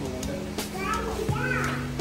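Background music with steady held low notes, and a child's high voice rising and falling over it about a second in.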